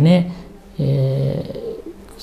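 A man's voice: a word trails off, then after a short gap a level, drawn-out hesitation sound of about a second, like a held 'mmm' or 'aaa'.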